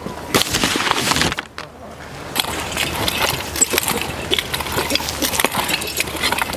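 Rake scratching through loose, dry garden soil, a dense gritty crackle of stroke after stroke, with a short pause about one and a half seconds in.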